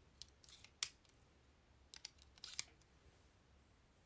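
Faint plastic comb strokes through hair close to the phone's microphone: a few brief rasps and sharp clicks, the sharpest about a second in and another cluster around two and a half seconds.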